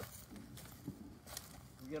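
Faint footsteps on ground littered with fallen sticks and leaves, with a couple of light crunches underfoot.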